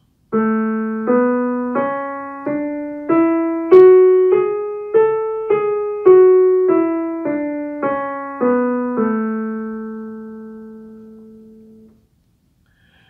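Yamaha digital piano playing the A major scale, one note at a time, one octave up and back down at about a note and a half per second. The final low A is held and dies away over about three seconds.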